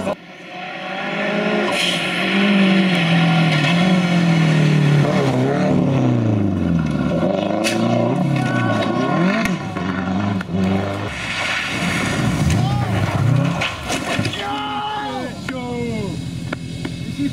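Rally car engines at full throttle on a stage, the pitch climbing and dropping again and again through gear changes and lifts as a car comes up to the corner and passes. A second car follows in the last few seconds.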